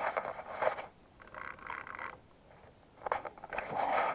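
Rustling and scraping as a fishing rod is handled among dry reeds, in three short bouts.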